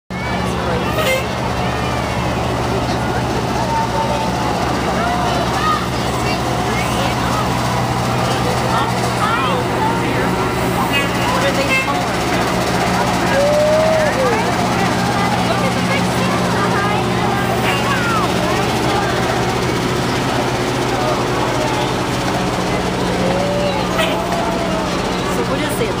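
A fire truck's engine running in a steady low drone as it rolls slowly past, with crowd voices chattering throughout.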